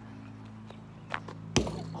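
Basketball bouncing on an asphalt court: a faint bounce about a second in, then a louder one just before the shot is released. A steady low hum runs underneath.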